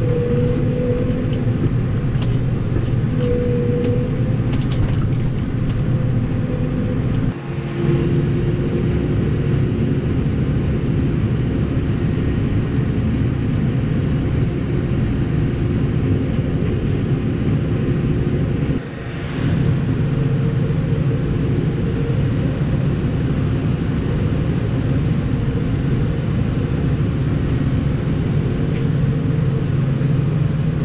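Case Puma 240 CVX tractor's six-cylinder diesel engine running steadily under way, a low drone heard inside the cab, with a few light clicks in the first seconds. The drone dips briefly twice, about a third of the way in and again about two-thirds in.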